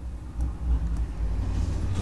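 A low, steady rumble, louder from about half a second in, with a few faint taps of a stylus on a tablet.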